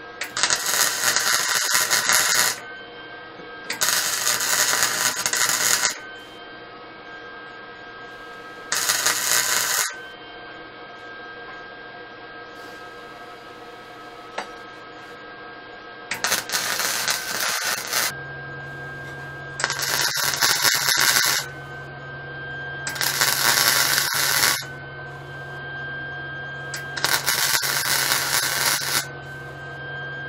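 Wire-feed welder laying short tack welds and beads on the mini bike's steel tubing frame: seven separate bursts of crackling arc, each lasting one to two and a half seconds, with pauses between them.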